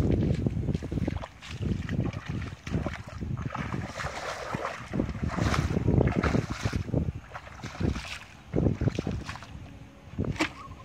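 Bare feet wading through shallow muddy water, with irregular sloshing and splashing steps, and wind buffeting the microphone.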